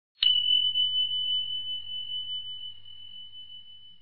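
A bell struck once just after the start, then a single high ringing tone that slowly fades away.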